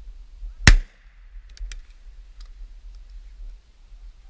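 A single shotgun shot, very loud and sudden with a short ringing tail, fired at a thrush in flight.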